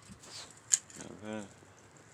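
A sharp click about three-quarters of a second in, the loudest sound, then a short voiced sound like a brief spoken syllable or hum a little after a second in.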